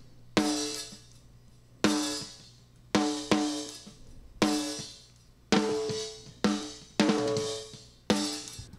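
Snare-top microphone track from a multitrack drum recording, played back through a gate/expander with threshold and hysteresis set: about eight snare hits, each ringing out in a pitched tail that fades away. Between the hits the kick and hi-hat bleed is mostly cut, because the gate opens only on the loud hits and closes late enough to keep each tail.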